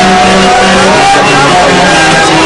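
Loud old-skool electronic dance music played over a club sound system, with a bass line stepping between two low notes.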